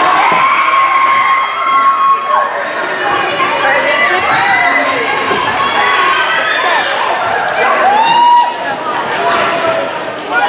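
A crowd of young voices shouting and cheering together, many at once, with several long held high calls near the start and again near the end.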